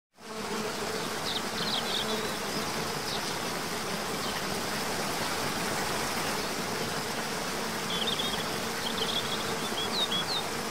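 Outdoor ambience: a steady rushing noise with a low buzzing hum under it, and short high bird chirps about a second in and again near the end.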